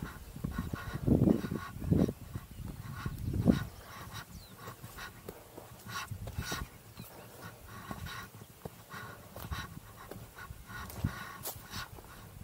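A hiker breathing hard on a steep trail, with footfalls knocking through it. It is louder in the first few seconds.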